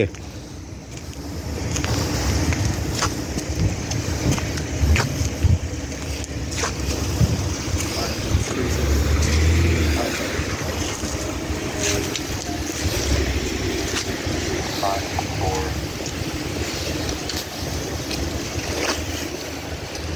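Low rumble of wind buffeting a handheld phone's microphone, mixed with car engines and traffic around a parking lot, with scattered clicks and faint voices now and then.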